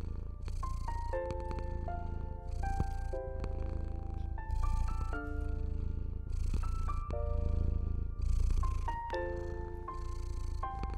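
A slow, gentle piano melody of single ringing notes and soft chords over a domestic cat's steady low purring, the purr swelling with a soft hiss about every two seconds.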